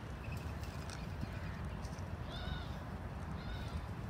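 Two faint, short bird calls, about two and a half and three and a half seconds in, over a steady low rumble.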